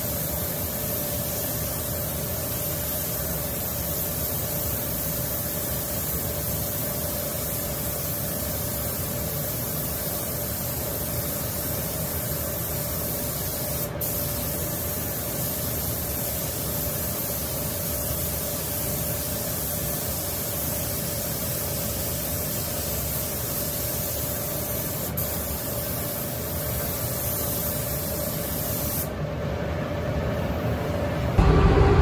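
Iwata LPH 400 gravity-feed spray gun hissing steadily as it lays on a coat of automotive clear coat, with a steady hum beneath. The hiss stops just before the end.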